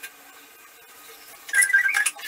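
Small toiletry containers handled at a bathroom sink: a quiet room, then about a second and a half in a brief ringing rattle of several short high notes as items knock together.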